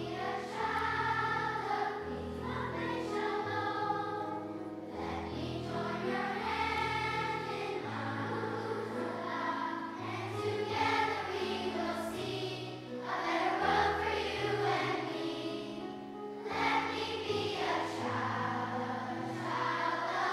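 Large children's choir singing in unison phrases over a steady instrumental accompaniment with held low bass notes.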